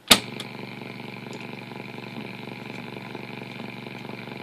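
A piano-key band selector button on a vintage Wega valve radio clicks in. The speaker then gives a steady hiss with a low hum, with no station tuned in.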